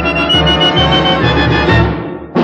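Dance orchestra playing the closing bars of a tune, with a pulsing bass line under a held high note. The sound thins out near the end.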